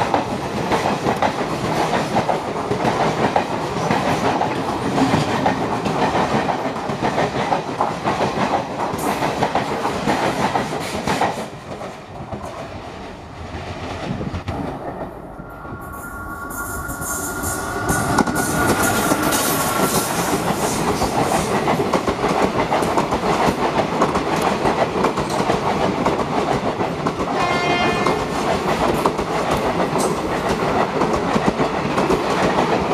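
Indian Railways passenger coaches rolling past close by with a steady clickety-clack of wheels over the rail joints and points. After a brief lull, a two-note train horn sounds for about four seconds as the next train comes on, and its coaches then rumble past, with a short high tone near the end.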